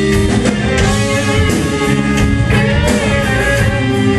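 Rock band playing live: electric guitars and a drum kit.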